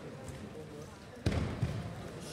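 A heavy thump on the wrestling mat a little over a second in, followed shortly by a softer second thump, as sambo fighters step in hard and close into a grip exchange.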